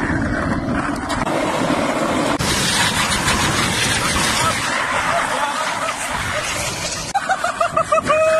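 Skateboard wheels rolling fast on rough concrete, a loud steady rushing noise with wind buffeting the microphone. About seven seconds in, a man's wavering shout joins it.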